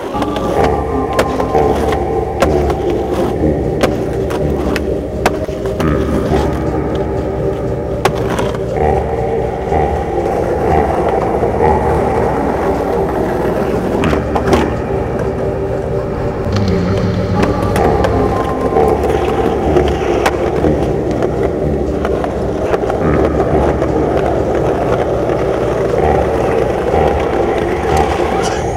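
Skateboards riding on concrete: wheels rolling, with several sharp clacks of tail pops and board landings, over a steady background music track.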